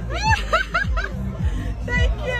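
A person laughing in a quick run of about five short bursts in the first second. Background music with a deep, sliding bass beat plays under it.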